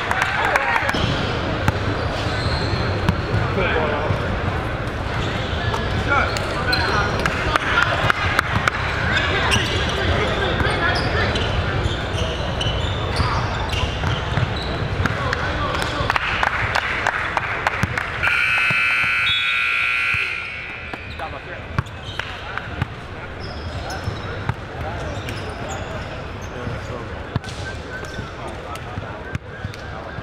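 Gym crowd voices and basketball bounces, then, about two-thirds of the way through, the scoreboard's end-of-game buzzer sounds as one steady electronic tone for about two seconds.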